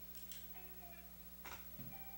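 A lull in soft guitar playing: a few faint held notes and two short scraping clicks, with a soft low thump near the end, over a steady electrical hum.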